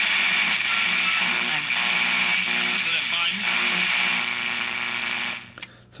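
Jeep WPSS-1A portable radio receiving AM through a small test speaker: a station's voice, faint under loud steady hiss and static, until it cuts off suddenly near the end. It shows that the repaired AM-FM switch now selects the AM band.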